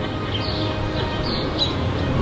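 Background music, with a few short bird chirps over it.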